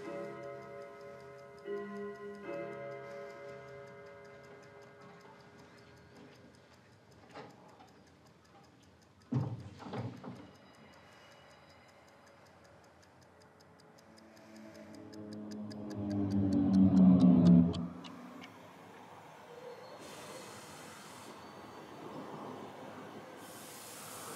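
Film soundtrack: soft held music notes fade out while a steady clock-like ticking runs on. A sudden low thump comes about nine and a half seconds in, and a low swell with several tones builds to the loudest point near seventeen seconds before giving way to a steady hiss.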